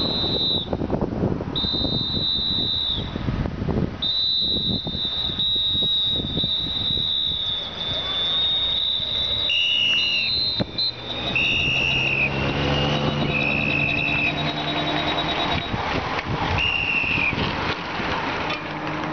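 Whistles blown again and again in long, steady blasts that drop slightly in pitch at the end, the usual warning to clear the road as a race convoy comes through; a second, lower-pitched whistle joins from about ten seconds in. Police motorcycle engines come near in the second half, over wind and traffic noise.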